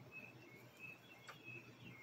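Near silence: room tone with faint, short high chirps scattered through it and a couple of soft clicks.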